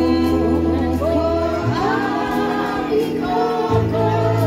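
Men and women singing a Gorontalo folk song together to a Yamaha electronic keyboard, over held bass notes that change twice.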